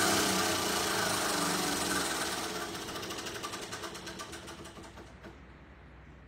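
Spinning prize wheel, its pointer flapper ticking rapidly against the pegs. The ticks slow and spread out as the wheel loses speed and stop about five seconds in when the wheel comes to rest.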